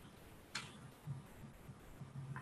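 Near-quiet call audio with a faint low hum and a single short click about a quarter of the way in.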